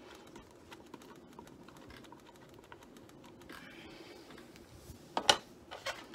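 Light scattered tapping and clicking of a small paintbrush dabbing black acrylic paint along the edges of a canvas, over a faint steady hum. About five seconds in come a few loud sharp knocks and rattles as the canvas is handled against the foil tray.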